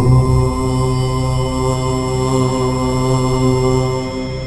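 A deep voice chanting one long, steady Om, held at one pitch and stopping near the end, over a faint ambient drone.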